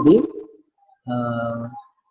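A man's voice: the end of a spoken word, a short pause, then a held, level-pitched 'uhh' hesitation sound lasting under a second.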